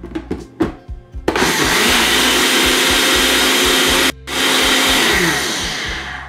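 Ninja Professional personal blender running at full speed, blending pineapple chunks and yogurt into a smooth drink. After a few clicks it starts about a second in, cuts out for a moment at about four seconds, runs again, and then winds down with a falling pitch near the end.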